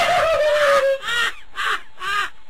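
A loud, harsh, caw-like cry with a falling pitch, about a second long, followed by a few brief voice-like sounds.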